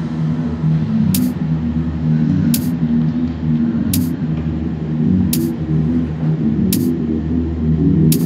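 Neurofunk drum and bass in a bass-heavy passage: a dense, choppy bass line fills the low register, with a short bright hiss-like hit about every one and a half seconds.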